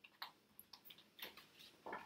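Oracle cards being shuffled by hand: faint, irregular light clicks of card edges, with a short rustle near the end.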